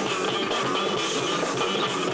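Four-string electric bass played melodically, with a quick, steady run of plucked notes and chords.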